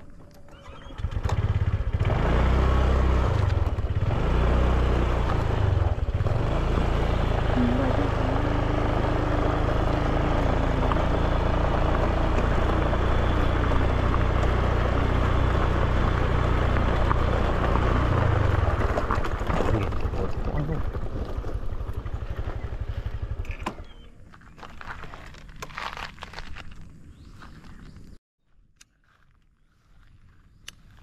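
Honda scooter engine running steadily while it is ridden along a gravel track, with a heavy rush of wind and rumble over the camera microphone. The engine sound starts about a second in and stops about three-quarters of the way through, leaving faint clicks and handling noises.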